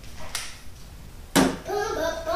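A single sharp knock about one and a half seconds in, then a person's voice.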